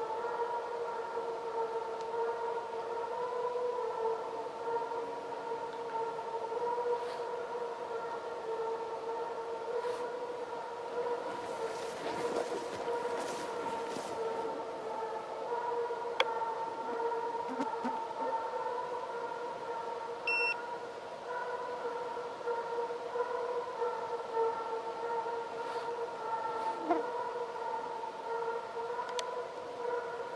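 Russian hounds giving voice on a hare's trail at a distance: a drawn-out, wailing howl that runs on almost without a break, shifting a little in pitch now and then.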